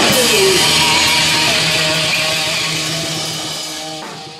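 Live punk rock band with loud, distorted electric guitar ringing out, fading steadily from about halfway through.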